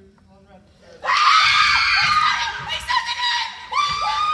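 A group of teenage girls breaks into loud, excited screaming about a second in, many high voices at once, after faint talk.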